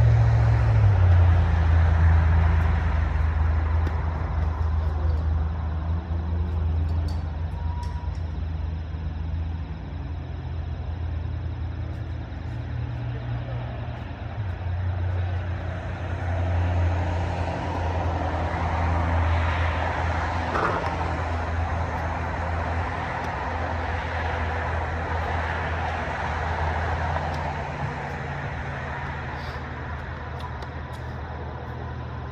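Steady low rumble of motor vehicle traffic, loudest in the first few seconds and swelling again in the second half.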